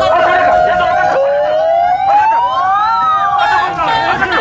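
Loud siren-like wailing: a high tone held steady, then a second wail that rises slowly in pitch for nearly two seconds before falling away.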